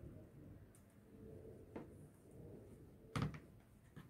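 Quiet handling of rolled sugar paste on a cutting mat, with a light click a little before two seconds and one sharper knock about three seconds in, as a plastic rolling pin is set down on the mat.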